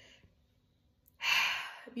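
A woman's deliberate releasing sigh: one audible breath of air starting just after a second in and fading away over about half a second.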